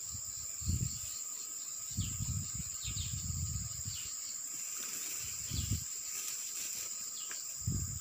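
Insects in the surrounding forest keep up a steady high-pitched drone throughout, with a few faint chirps. Several short low muffled thumps come and go, near the start, in the middle and near the end, from people clambering up the loose soil close to the phone.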